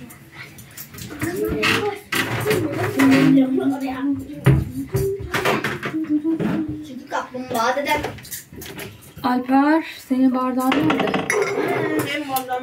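Dishes and cutlery clinking at a kitchen table and counter, with several short sharp knocks, while people talk over it.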